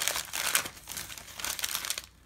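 Shiny metallic gift-wrapping paper being crumpled and balled up in the hands, a dense crinkling that stops near the end.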